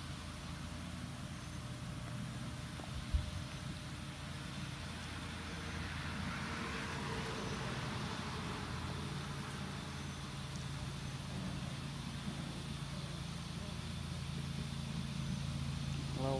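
Steady low mechanical hum over an even background noise, with a single short knock about three seconds in.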